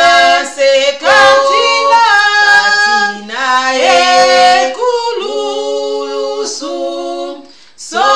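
Two women singing a gospel hymn together without accompaniment, in long held notes that step up and down in pitch. The singing breaks off briefly near the end.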